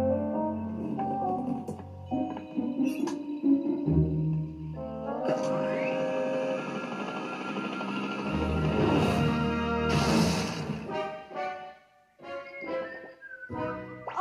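Cartoon score music playing from a TV, with a few sharp thuds of sound effects in the first half; the music thins out and breaks off near the end.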